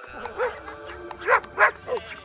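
Small dog barking: four short barks, the two loudest close together past the middle, with music playing underneath.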